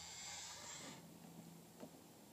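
Near silence: a faint hiss that fades out about a second in, then a couple of faint ticks.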